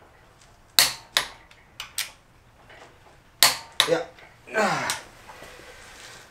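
Hand tools clinking on the bare steel engine and flywheel: about six sharp, separate metallic clicks and clanks spread over the first four seconds.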